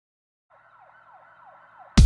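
A siren with a quick, repeating falling wail fades in faintly out of silence. Right at the end the song crashes in with a heavy bass hit.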